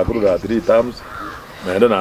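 A man speaking, with a short pause just after the middle before he carries on.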